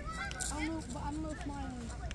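Geese on the lake honking, a run of several short calls in quick succession.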